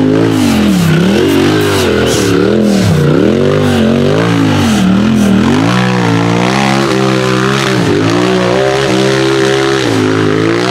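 Off-road race buggy's engine revving hard and falling back in quick surges, about one a second, as it climbs a steep rocky slope under load. About halfway through it settles into steadier high revs, with a brief dip near the end.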